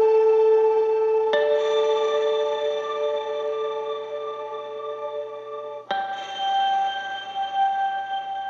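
Isolated electric guitar track played through an ambient effects pedal: long sustained, soundscape-like notes that ring on smoothly, with a new note entering about a second in and another near six seconds.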